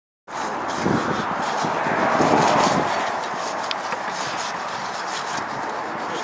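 Gritty scraping of a steel trowel and carving tool working wet concrete on a wall. It comes in abruptly just after the start, over steady outdoor noise with faint voices in the background.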